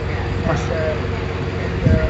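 Steady low rumble of road traffic, with faint, indistinct chatter of people talking.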